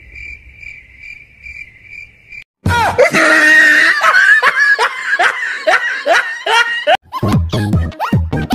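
Crickets chirping in a steady pulsing trill for about two and a half seconds, then a brief gap and a loud burst of laughter in repeated falling cackles. A dance-music beat comes in near the end.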